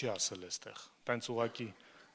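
A man preaching in Armenian into a handheld microphone, with a short pause about halfway through.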